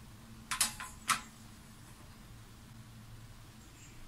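Two short sharp clicks about half a second apart, over a faint steady low hum.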